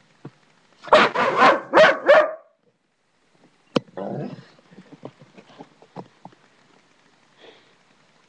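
A dog barking, a quick run of about four barks about a second in, followed a little later by a single sharp click and some faint scuffling.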